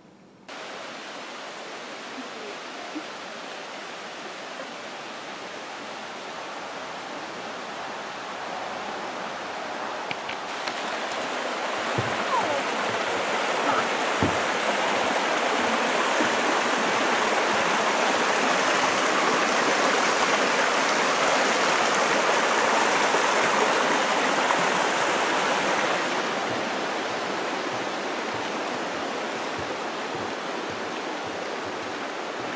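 Mountain creek rushing over rocks, heard as a steady wash of water. It grows louder about ten seconds in and eases off a little near the end.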